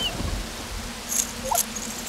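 A young woman whimpering, with short high-pitched cries and a couple of sharp breaths in between.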